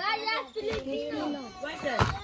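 Children's voices chattering and calling out over one another.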